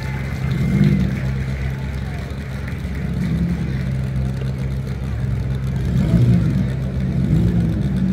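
Car engines running as the cars lap a dirt arena, the revs rising and falling several times as the drivers accelerate along the straights and ease off for the turns.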